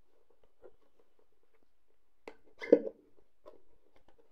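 Cardboard product box being opened by hand: faint scraping and rustling of the card, a sharp click a little past two seconds, then a short, louder rasp of cardboard just before three seconds as the flap comes free.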